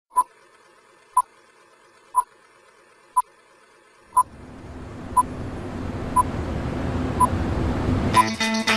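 Film-leader countdown beeps: a short, high beep once a second, eight times, over a faint hiss. About halfway through, a low rumbling noise swells steadily louder beneath the beeps.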